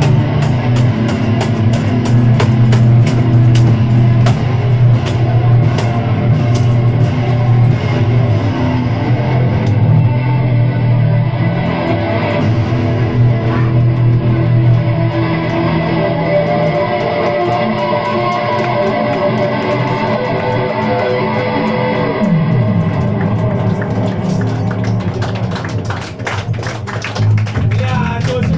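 A live post-punk band playing, with electric guitars, bass guitar and drums. About nine seconds in, the drums drop out and the guitar and bass ring on alone. A downward bass slide leads the drums back in for the last few seconds.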